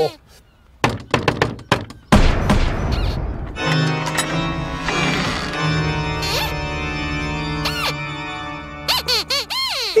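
A quick run of about six knocks on a large wooden door, followed at about two seconds by a loud crash, then a long held chord of eerie music. Near the end come high squeaks that rise and fall, Sweep the puppet dog's squeaky voice.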